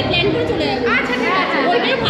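Several people talking at once: overlapping conversation and chatter.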